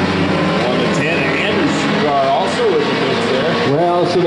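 Engines of a field of stock cars racing around an oval track, a steady drone, with a commentator's voice over it in the second half.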